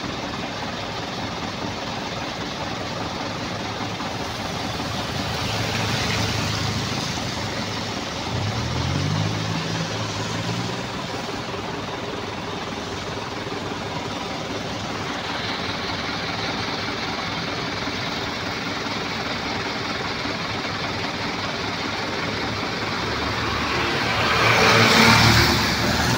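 Diesel truck engines idling steadily in a queue of waiting trucks, with one engine revving up briefly about eight to eleven seconds in. Near the end a loaded truck drives up alongside and the engine noise grows louder as it passes close.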